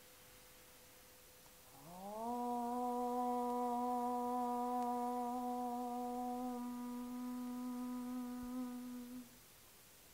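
A woman chanting one long "Om": her voice slides up into a steady held note about two seconds in, holds for some seven seconds, and stops shortly before the end.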